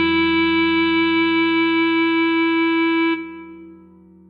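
Clarinet holding one long, steady note, the tied written F-sharp of the Bb clarinet part. It stops about three seconds in and fades away into a rest.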